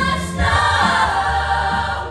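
A mixed ensemble of student voices singing together over accompaniment with a bass line, swelling into a long held chord from about half a second in.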